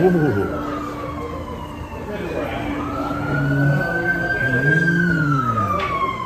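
Siren wailing slowly, with the pitch falling, rising again about halfway through, and falling once more near the end. Voices are murmuring underneath.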